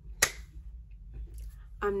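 A single finger snap: one sharp click shortly after the start.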